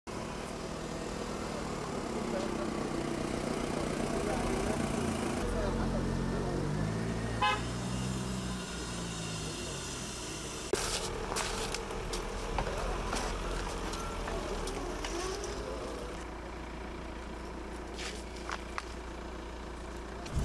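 Outdoor street ambience: indistinct voices and a road vehicle, with scattered clicks and knocks in the second half.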